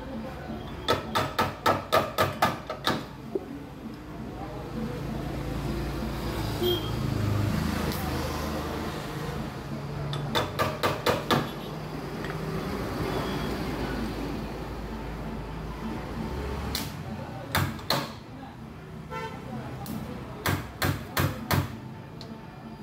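Runs of quick, sharp metal taps as a hammer works out a dent in an auto-rickshaw's sheet-steel rear body panel: about ten rapid strikes near the start, a shorter run about ten seconds in, and a few more near the end. A low steady hum runs under the middle and stops about seventeen seconds in.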